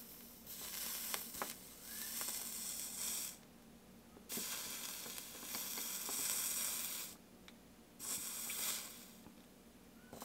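Solder and flux sizzling under a hot soldering iron tip as solder wire is melted onto a copper-foiled stained glass seam. It comes in three stretches of a few seconds each, the last one shorter, with brief pauses between.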